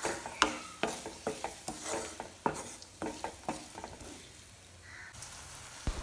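Chopped onions sizzling in oil in a non-stick pan, stirred with a spoon that knocks and scrapes against the pan repeatedly for the first three or so seconds. After that only a quieter sizzle is left.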